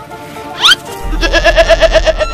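Background music with a loud quick rising whistle-like sweep just under a second in, then a goat bleating with a fast wavering pulse from about one second in.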